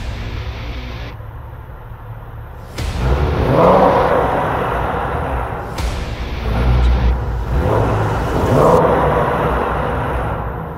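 Porsche 911 GT3 flat-six engine running with a deep low rumble inside a parking garage, revved twice, about three seconds in and again about seven and a half seconds in, each rev rising in pitch and getting louder.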